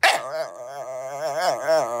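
A Shiba Inu complaining at being shut in a crate: a loud, drawn-out, wavering howling whine that starts suddenly and keeps going.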